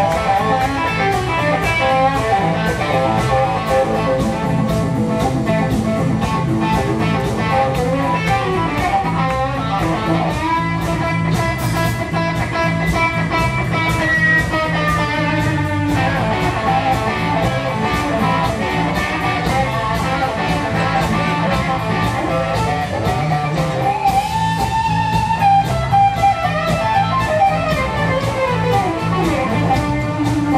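Live blues-rock instrumental: a Stratocaster-style electric guitar plays lead with long held notes and pitch bends over bass and drums.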